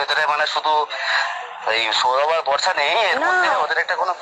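Speech only: one person talking without pause, heard through a phone's loudspeaker.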